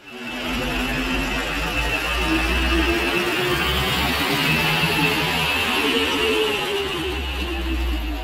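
Cars and a bus driving slowly past close by: engines running over a steady low rumble of traffic noise.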